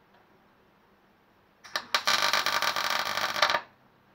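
MIG welding arc crackling as a short weld is laid on thin steel body panel, tacking a repair piece into a rusted tailgate window frame. After two brief sputters as the arc strikes, it burns for about a second and a half and stops abruptly.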